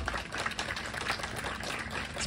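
Light, scattered hand-clapping from a small audience after a song ends: a patter of separate claps.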